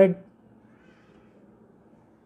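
A man's word trailing off, then quiet room tone with a faint low hum. A faint, brief high-pitched sound comes in the first second.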